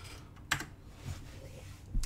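Computer keyboard keys being pressed: a few separate clicks, the clearest about half a second in.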